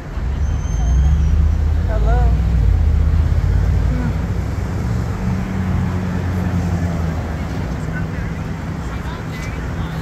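City street traffic: a nearby motor vehicle's low engine rumble, loudest in the first half and easing off after about six seconds.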